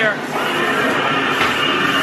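Haunted dark ride's spooky sound effects playing over the attraction's speakers: a long, high-pitched effect starting about half a second in.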